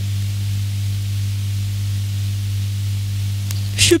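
Steady low electrical mains hum with a light hiss from the handheld microphone's sound system, unchanging throughout; a woman's voice starts again at the very end.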